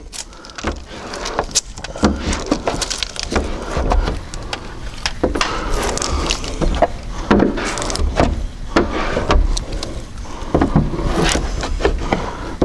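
A squeegee scraping in irregular strokes over the black defroster lines of a car's rear window as tint film is pressed onto the glass. The sound shows the film is not yet set on the lines, and harder pressure is needed.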